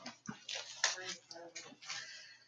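A short lull with faint low voices and a few soft clicks and knocks of handling or movement.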